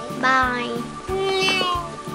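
Light background music with a child's drawn-out, sing-song 'bye', followed by a long held high note that sounds like a meow.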